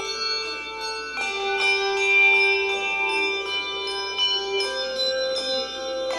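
Handbell choir playing a piece: handbells struck in chords and melody notes, each note ringing on and overlapping the next, with new notes entering every second or so.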